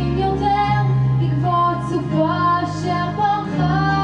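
A young woman singing a Hebrew song into a handheld microphone over instrumental accompaniment, the low notes of the accompaniment changing about every one and a half seconds.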